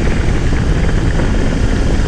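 Steady riding noise from a BMW R18 Bagger at highway speed: the rush of wind and the big boxer-twin engine running evenly under way.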